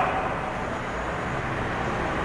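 Steady background noise: a low rumble with an even hiss over it, with no distinct events.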